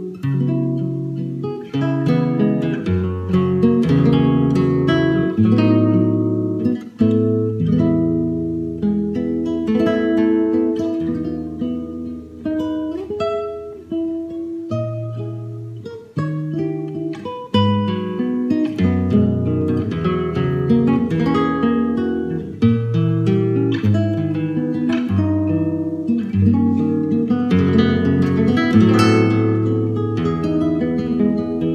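Solo nylon-string classical guitar playing chords and single melody notes that ring and overlap, with no voice.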